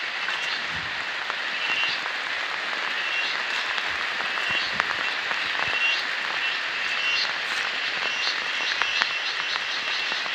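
Steady outdoor chorus of small chirping animals: short high trills repeat every second or so over a constant hiss, coming more often near the end.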